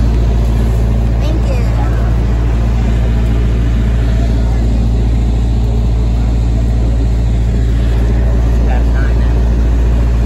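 Parked ice cream truck's engine idling up close, a loud steady low hum.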